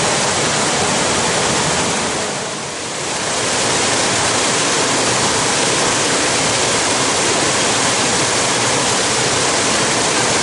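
Steady rush of a small waterfall and creek water running over rock ledges, dipping briefly in level about two and a half seconds in.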